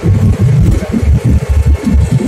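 Jet airliner's takeoff roll heard from inside the cabin: a loud, uneven low rumble.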